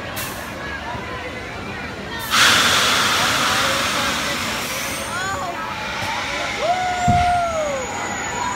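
Pneumatic drop-tower ride releasing compressed air: a sudden loud hiss about two seconds in that slowly dies away over several seconds. Riders' screams rise and fall near the end.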